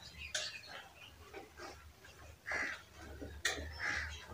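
Marker pen writing on a whiteboard: faint scratching strokes with short squeaks and a couple of small sharp taps.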